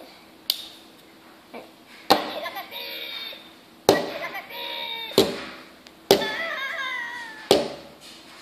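Plastic Happy Meal toy being handled, with about six sharp clicks or knocks, most followed by a second or so of pitched, speech-like sound.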